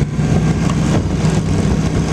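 Motor vehicle engines running slowly at low revs, a steady low hum.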